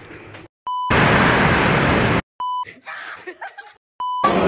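Video-editing transition effect: a short test-pattern beep, then about a second and a half of loud TV static hiss, a second beep, a quieter stretch of faint scattered sounds, and a third beep at the very end, with hard cuts to silence between the parts.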